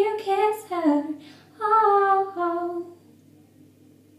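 A woman singing a phrase of a pop ballad in sustained notes, with a downward slide about a second in; the phrase ends about three seconds in.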